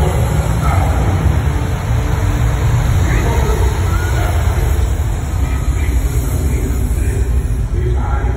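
A deep, steady rumble from the animatronic fountain show's sound system, with a crowd chattering under it.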